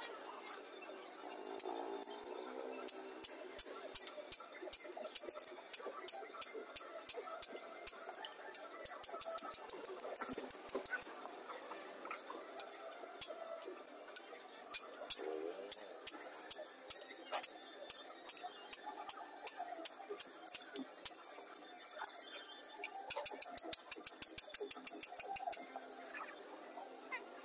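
Light, sharp metallic clicks of a small hand tool on a steel shovel blade as decorative arcs are engraved into it, in irregular runs that come fast, several a second, near the end.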